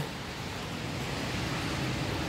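Steady hiss of rain falling outdoors: an even noise with no distinct drops or other events.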